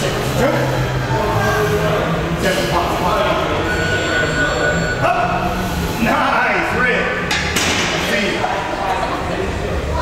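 Indistinct voices throughout, with a couple of thuds from a loaded Smith machine bar, about halfway through and again a little later.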